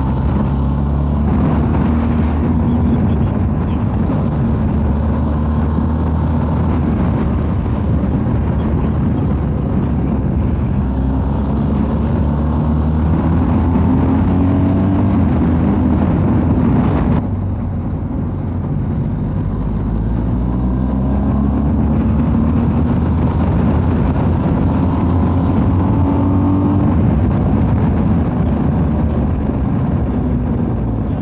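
BMW R 1250 GS boxer-twin engine heard from on board at road speed, under steady wind noise. The engine note climbs in pitch several times as the bike accelerates. The sound drops briefly a little past halfway.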